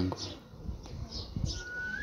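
A lull with a low background rumble and a few soft knocks. Near the end comes one short, thin whistled note that holds steady and then rises slightly in pitch.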